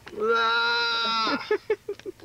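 A person's drawn-out vocal noise held on one steady pitch for just over a second, like a bleat, followed by a few short bursts of laughter.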